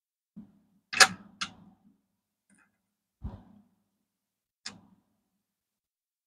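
Five or six separate sharp clicks and taps of pennies being handled and set down, the loudest about a second in.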